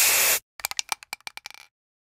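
Spray-paint sound effect for a logo: a short hiss of an aerosol can spraying, then a quick run of about ten rattling clicks like the mixing ball in a shaken paint can.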